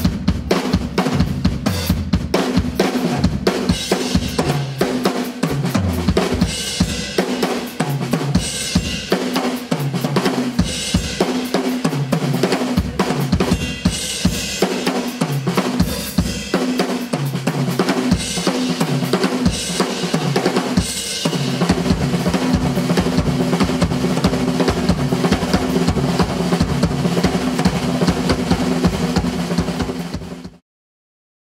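Acoustic drum kit played in a fast, dense solo: continuous strokes on snare, bass drum and toms, with cymbal crashes coming about every two seconds through the middle part.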